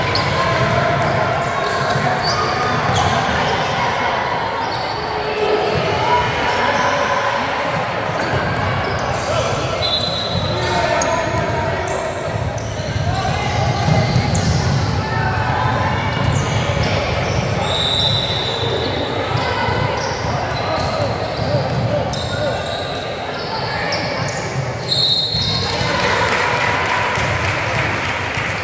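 Basketball being dribbled and bounced on a hardwood gym floor during a game, with players' and spectators' voices echoing in the large hall. A few brief high-pitched tones cut through.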